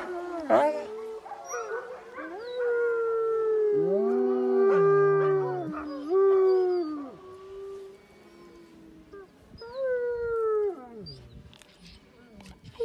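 A wolf and a dog howling together in long, overlapping howls at different pitches, with a lower voice held under a higher one. After a short lull, one more howl about ten seconds in slides down in pitch.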